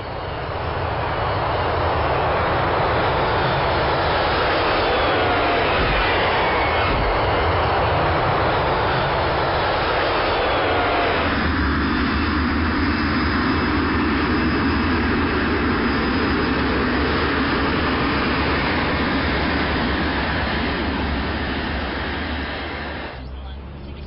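Twin-turboprop airliner's engines and propellers running loud and steady as it comes in to land, with faint gliding whines. About eleven seconds in the sound shifts to a lower, heavier tone as the plane rolls along the runway, and it fades near the end.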